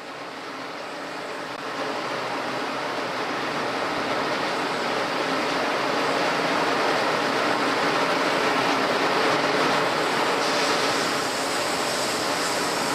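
A steady rushing noise that grows gradually louder over the first few seconds, then holds.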